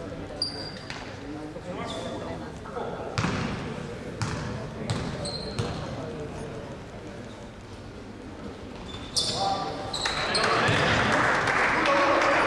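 Indoor basketball game: a basketball bouncing on the court floor now and then, with voices from players and spectators echoing in the hall and a few short, high sneaker squeaks. The crowd noise grows louder over the last two seconds or so.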